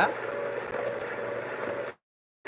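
Electric hand mixer running steadily with its beaters in cake batter, a constant motor whir. The sound cuts out to complete silence just before the end.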